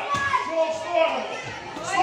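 Voices in a large gym hall, children's voices among them, talking and calling out.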